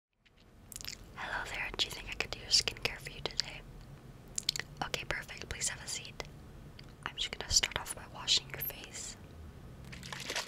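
A woman whispering close to the microphone, her breathy speech broken by small sharp mouth clicks.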